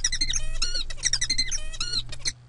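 Recorded songbird song played back from a computer: a fast run of repeated harsh syllables made of stacked tones, with a low electrical hum underneath.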